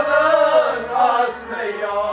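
Male voice singing a Kashmiri Sufi kalam in long, wavering notes, over steady drone tones and a low drum beat a little under twice a second.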